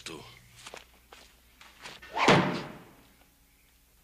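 A single loud, sudden thud about two seconds in that dies away over half a second, after a few faint knocks.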